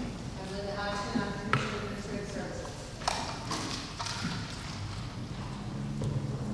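Speech from a voice some way off in a large hall, with a few sharp knocks, the clearest about one and a half and three seconds in.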